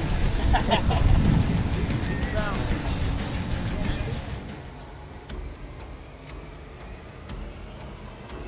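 Heavy wind rumble on the microphone of a moving boat, with a woman's laughter over it. About four seconds in it gives way to much quieter open-lake ambience.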